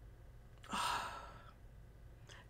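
A woman sniffs a perfume bottle held to her nose: one audible breath drawn through the nose about a second in, fading out over half a second.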